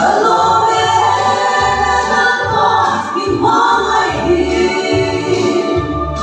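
Female vocal group singing a gospel song in harmony through microphones, with held notes.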